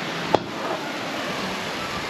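Steady rushing wind noise outdoors, with one sharp knock about a third of a second in.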